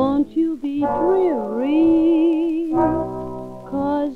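Swing-era popular song recording playing a passage without lyrics just before the vocal line comes in: held, pitched notes, with one note sliding down and back up near the middle.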